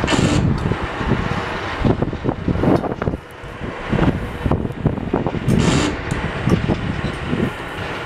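Wind buffeting the microphone: an uneven low rumble with gusty thumps and crackles that eases briefly about three seconds in.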